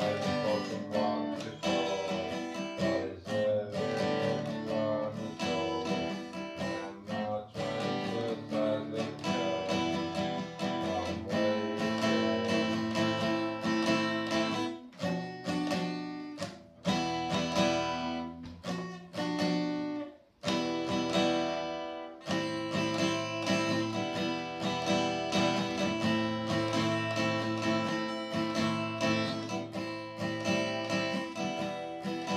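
Steel-string acoustic guitar strummed in chords, with a brief break about twenty seconds in before the strumming resumes.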